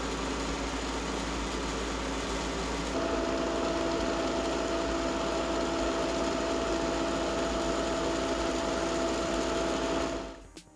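Stuart centrifugal pump running at 3000 rpm while cavitating: a steady motor hum under a dense rattle like marbles or gravel passing through the pump and pipes. The rattle comes from vapour bubbles imploding because the inlet valve has been closed and the suction pressure starved. About three seconds in it grows louder and a higher steady tone joins in.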